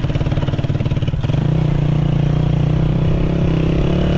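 Small motorcycle engine running, pulsing for about the first second, then its pitch steps up and holds steady as it picks up speed.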